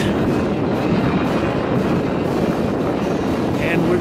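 Steady city street noise heard while riding a bicycle: a dense rush of traffic and wind on the microphone, with a voice briefly near the end.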